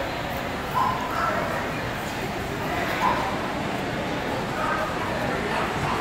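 A dog giving several short yips and barks, the loudest about a second in and three seconds in, over a steady background of crowd chatter.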